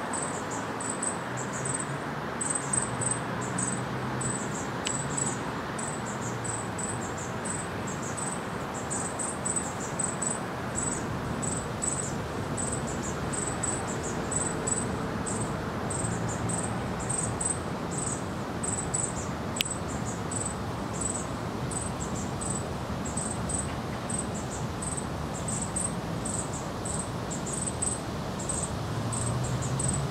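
High-pitched insect chirping, a short chirp repeated evenly about one and a half times a second, over a steady background hiss and rumble.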